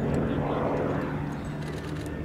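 Westland Lysander's single radial piston engine and propeller running steadily as the aircraft flies past, its sound swelling about half a second in and easing off toward the end.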